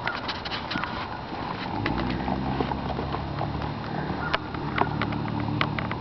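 Hoofbeats of a ridden western pleasure horse moving slowly over an arena's dirt, an irregular run of sharp clicks and soft thuds. A steady low hum joins in about two seconds in.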